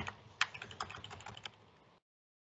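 A quick run of about ten light computer clicks over roughly a second, stepping an on-screen setting down, cutting off suddenly about one and a half seconds in.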